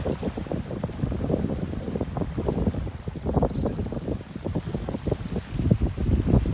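Wind buffeting the microphone, an uneven low rumble, over small waves washing onto a sandy shore.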